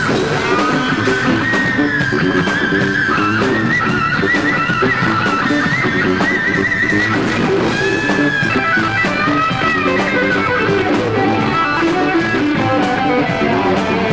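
Electric lead guitar playing a melodic line of held notes with vibrato over a band backing, at a rock sound check.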